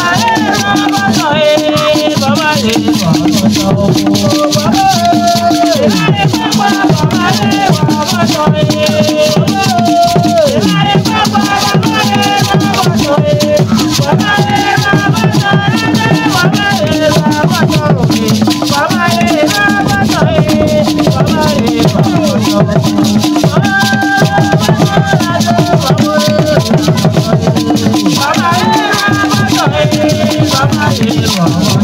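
Traditional Ewe drumming ensemble: barrel drums struck with sticks and shaken rattles keeping a fast, steady rhythm, with group singing over it.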